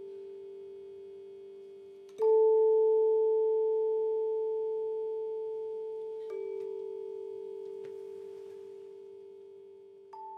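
Tone chimes ringing: two low notes close together in pitch sustain and slowly die away. A chime is struck firmly about two seconds in, the loudest note, and another more softly about six seconds in.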